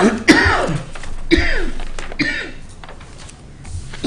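A person coughing in a short fit: three coughs about a second apart, each a little weaker than the one before.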